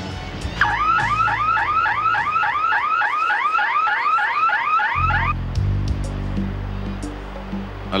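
An electronic whooping tone that rises over and over, about four times a second, for around four and a half seconds. It then gives way to low sustained music tones.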